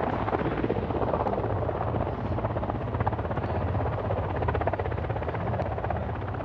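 Helicopter running steadily, its rotor giving a fast, even chop.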